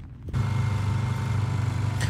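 A steady low motor drone that starts abruptly a moment in.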